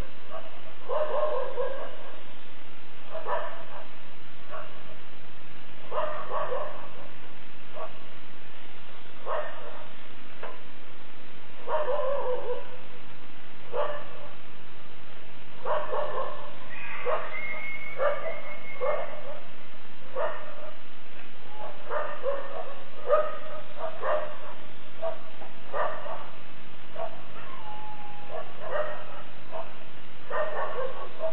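A dog barking and yipping in short bursts every second or two, over a steady low hum.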